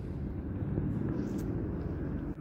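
A steady low engine rumble, with no single event standing out.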